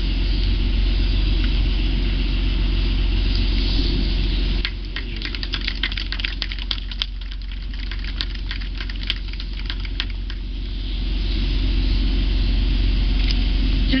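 A small group claps their hands for about six seconds, starting about five seconds in. A steady low hum continues underneath.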